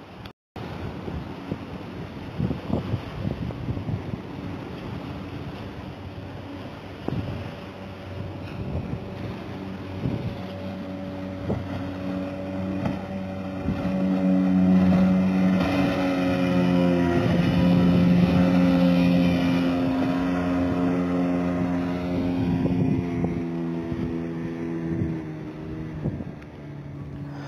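Outboard motor of a small fishing boat running past, its steady hum growing louder about halfway through and easing off near the end. Scattered sharp knocks sound in the first half.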